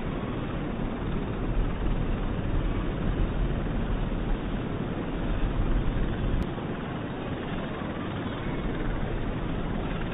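Tidal bore surging up a river: a steady rush of water with a heavy low rumble, a little quieter after about six and a half seconds.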